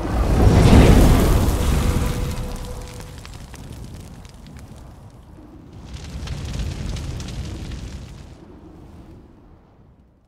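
Cinematic logo sound effect: a deep booming rumble that swells about a second in and slowly dies away, then a second, hissing whoosh from about six seconds in that fades out near the end.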